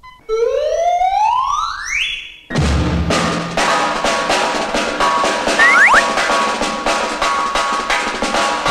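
A whistle glides steadily upward in pitch for about two seconds and cuts off abruptly. Fast, drum-led music with regular percussion hits takes over.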